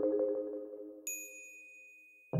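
Percussion ensemble music: a held, rolled marimba chord dies away, and about a second in a single high metallic ding is struck and left ringing.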